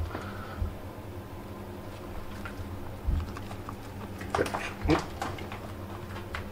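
Rotten wood and crumbling ceiling fill being worked loose by hand: faint scraping and crumbling with a few low knocks. Two short vocal sounds come near the end, around four to five seconds in.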